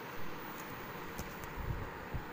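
Low steady background hiss with a few faint, brief ticks; no clear cooking sound stands out.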